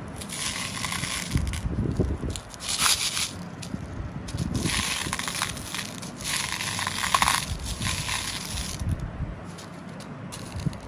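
Small candy-coated fennel seeds poured into and stirred by hand in a clear plastic bowl, rattling and rustling in several bursts of about a second each.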